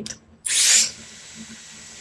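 Handheld hair dryer blowing air: a short loud rush of air about half a second in, then a steady fainter hiss of the airflow.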